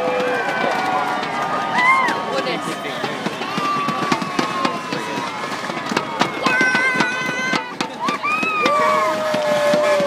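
Roadside crowd cheering and calling out, many voices at once, with sharp claps scattered throughout.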